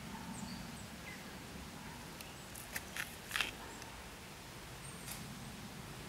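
Woodland outdoor ambience with a few faint, short bird chirps. A cluster of sharp snaps or knocks comes in the middle and is the loudest part, with one more near the end.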